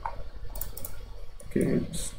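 A few computer mouse clicks as points and corners are picked on screen, with a brief bit of a man's voice near the end.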